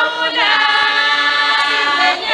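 A large group of Swazi maidens singing a traditional song together, unaccompanied. The voices slide up about half a second in, hold one note for over a second, then break off near the end.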